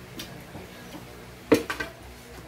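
A ceramic plate set down with one sharp clack about one and a half seconds in, followed by two or three quick small rattles. Faint small clicks before it.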